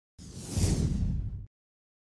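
A whoosh transition sound effect with a deep low rumble under a hissy top, swelling in a moment after the start and cutting off abruptly at about a second and a half.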